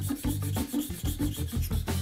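Japanese plane (kanna) blade being honed back and forth on a wet waterstone, a gritty scraping rub with each stroke as a secondary bevel is put on the edge. Background music with a steady beat plays along.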